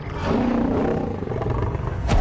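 Film sound design of a Trench sea creature's cry, loud and rough, coming in sharply just after the start over a steady low underwater rumble.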